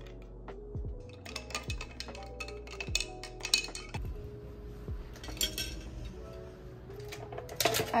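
Ice cubes and a glass straw clinking against a drinking glass of iced coffee, a run of light clinks in the middle, over soft lo-fi background music with a steady beat.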